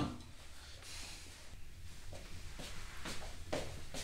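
Quiet room tone with a few faint, soft rustles in the second half, as a cotton T-shirt is picked up and handled.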